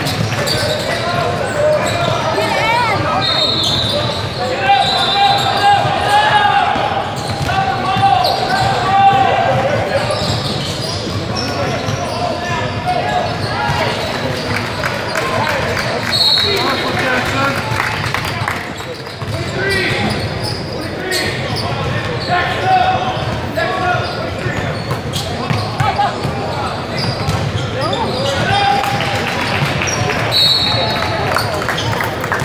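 Basketball game in a large, echoing gym: a basketball bouncing on the hardwood floor amid the untranscribed voices of players and onlookers.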